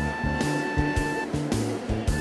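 Background music: long held melody notes over a steady, regular low beat.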